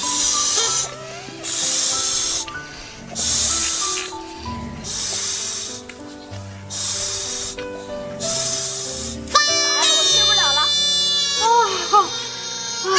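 Breath puffed into toy balloon whistles, short hissy blows about one a second, over background music. About nine and a half seconds in, a balloon is let go and its whistle squeals, a high tone that wavers and slides in pitch as it empties.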